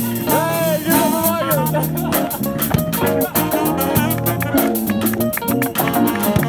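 A live band playing an upbeat groove: drum kit with a steady run of cymbal strokes, electric bass, keyboard and electric guitar, with a bending lead line in the first second or so.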